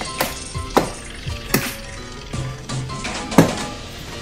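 Background music, with four irregular sharp plastic clicks and knocks, the loudest near the end, as the plastic cabin microfilter housing under the bonnet is handled and unclipped.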